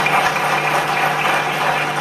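Audience applauding, a steady spell of clapping.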